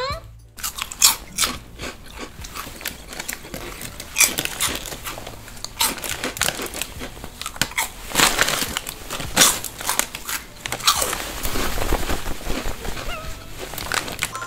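Crunchy Buldak tongs-shaped snack (불닭 집게 과자) being bitten and chewed close to the microphone: an irregular run of crisp crunches.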